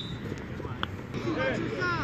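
Several distant voices calling out over an open field, with a single sharp click about a second in.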